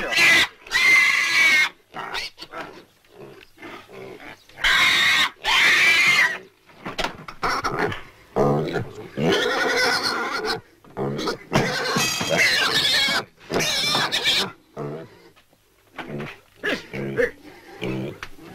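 Piglets squealing in loud bursts of a second or two, several times over, as they are held and handled.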